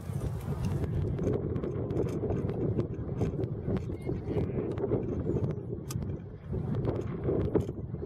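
Wind buffeting the microphone: a continuous uneven low rumble, with scattered light clicks throughout.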